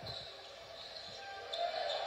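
Faint basketball game audio playing back from the highlight footage: a ball bouncing on the court a few times over a low, steady background, with one sharp click about one and a half seconds in.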